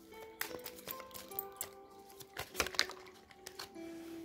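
Soft background music with sustained notes, under irregular light ticks and flicks of a deck of tarot cards being shuffled by hand, with a louder cluster of clicks a little past the middle.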